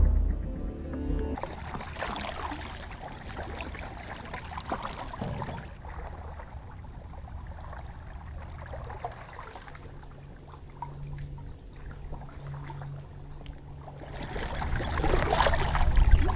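Kayak paddle strokes dipping and splashing through calm water, an irregular run of soft swishes, with the tail of a piece of music dying away in the first second or so.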